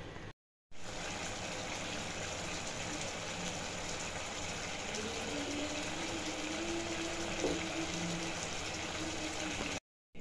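Egg masala curry simmering in a pan: a steady hiss, with a short break near the start.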